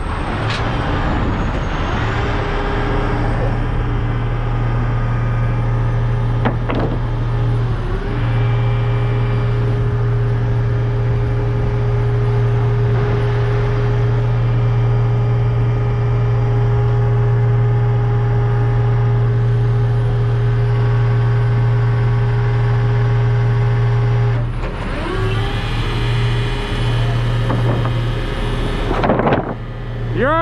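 A heavy rotator tow truck's diesel engine running at a steady speed, a loud even drone with a faint steady whine above it. Near the end the drone wavers and breaks up.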